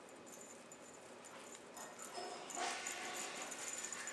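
A Legend Leopard kitten gives a short, quiet mew a little past halfway, with soft rustling around it and a faint steady high whine underneath.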